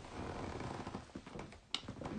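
Pen writing quickly on paper: a faint scratchy rustle for about a second, then a single sharp click near the end.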